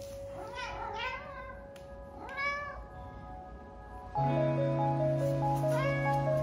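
Domestic cat meowing a few times, the loudest meow about two and a half seconds in. Music comes back in about four seconds in, and another meow sounds over it near the end.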